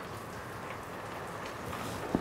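Heavy rain falling steadily, an even hiss with no breaks.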